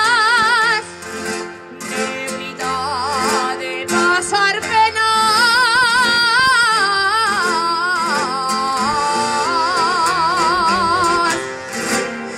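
A female soloist sings a Navarrese jota in full, powerful voice, with strong vibrato on long held notes, over plucked guitar accompaniment. About a second in she breaks off briefly while the guitar carries on, then takes up the line again.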